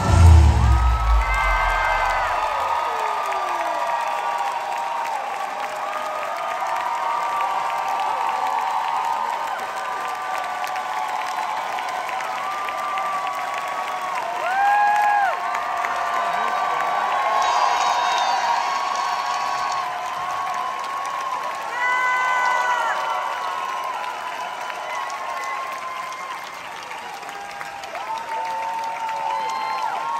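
A large theatre audience cheering, screaming and applauding, with many high whoops over steady clapping, as a song ends; the last chord of the music dies away in the first couple of seconds.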